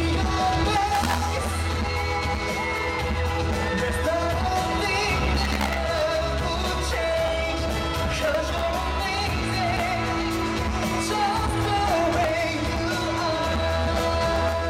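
Live pop song heard from the audience: steady band backing with a male voice singing over it.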